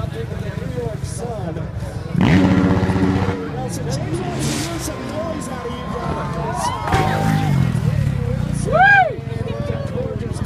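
Motorcycle engine revving hard in a short burst about two seconds in, and again more weakly around seven seconds, over steady crowd chatter. A brief rising-and-falling whoop comes near the end.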